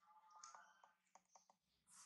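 Near silence with a handful of faint, short clicks from a baby monkey mouthing a small plastic bottle.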